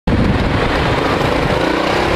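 Kasinski Comet GTR 650's V-twin engine on its original exhaust, running steadily at low city speed while the bike is ridden, heard from an onboard microphone.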